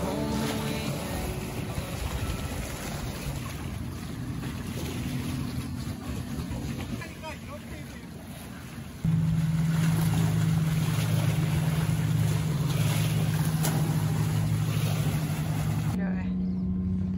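Wind and water washing against shoreline rocks. About nine seconds in, a steady low motorboat engine hum sets in suddenly and runs on.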